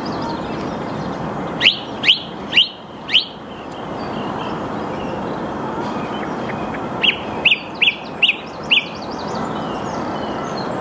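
Song thrush singing: a loud, sharp note repeated four times about half a second apart, then after a pause a second phrase of five quick repeated notes. The repetition of each note is the species' typical song pattern. A steady background hiss runs underneath.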